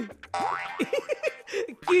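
A comic sound effect edited into the soundtrack: a low 'boing'-like pitch sliding upward, then a bright held tone lasting about a second, with brief voice sounds under it.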